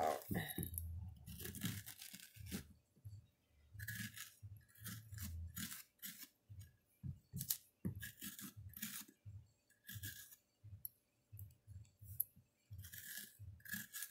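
Grapefruit spoon scraping the seeds and stringy pulp out of a halved acorn squash, in many short, irregular scrapes.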